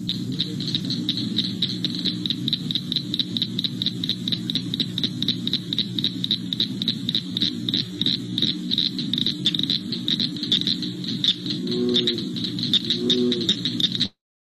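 Recorded chorus of cricket frogs: a fast, steady run of sharp, high clicks, like marbles clicking together, over a low background, with a couple of deeper calls about twelve seconds in.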